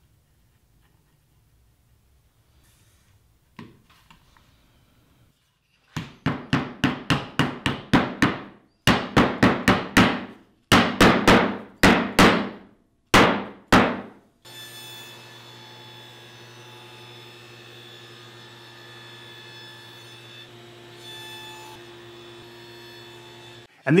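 Cherry strip being hammered into a recess in a maple board: about twenty quick strikes in four runs, each with a short ring. Then a steady machine hum follows.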